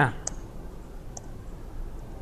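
Two light clicks of a computer mouse, about a second apart.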